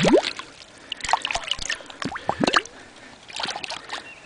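A hand sloshing and rummaging through shallow creek water over the bed. A splash at the start is followed by short bursts of splashing and gurgling about one, two and a half, and three and a half seconds in.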